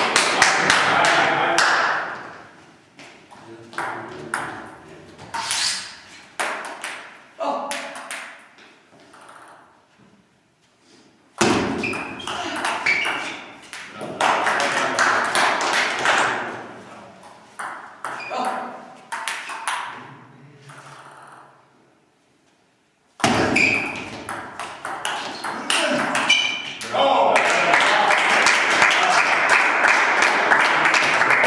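Table tennis rallies: the celluloid ball clicking back and forth off the bats and the table, each click ringing briefly in the hall, about one to two a second. Between rallies there are stretches of voices, which start suddenly about a third of the way in and again near two-thirds of the way.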